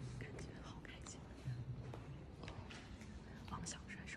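A woman speaking faintly, in a near whisper, in short soft bursts.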